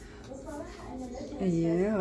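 A woman's voice talking quietly, growing louder near the end with a drawn-out word.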